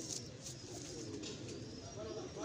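Domestic pigeons cooing faintly in the background.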